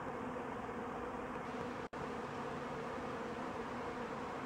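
Steady buzzing of a large mass of honey bees flying around and over a hive that is being robbed. There is a brief dropout just before halfway.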